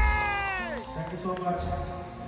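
A long sung note, amplified through a concert PA, ends with a downward slide in pitch about three quarters of a second in and fades, leaving quieter band and crowd sound.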